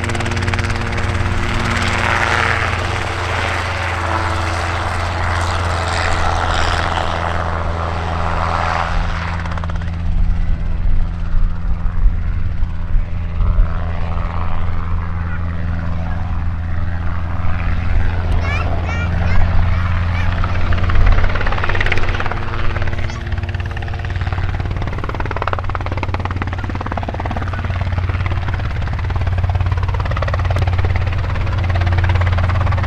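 Robinson R22 Beta helicopter's engine and rotor running with a steady drone as it flies low past. The sound grows thinner as it moves away through the middle, then fuller again near the end as it comes back to hover.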